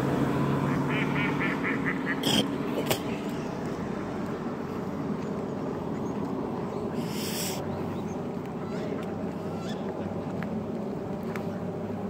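Waterfowl calling a quick run of about seven short notes about a second in, over a low steady hum that fades out after a few seconds and a constant outdoor rush. A couple of sharp clicks follow the calls.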